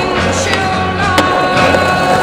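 Music with a steady beat over a skateboard rolling on concrete, with one sharp clack of the board about a second in.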